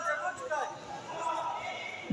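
Voices at a lower level than the loudspeaker announcements, with the general noise of a sports hall.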